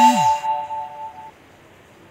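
Smartphone notification chime: a few steady bell-like tones sounding together, ringing out and fading away within about a second, then faint hiss.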